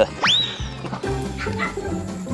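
Background music with a steady beat. A fraction of a second in, a quick rising whistle sweeps up and holds briefly.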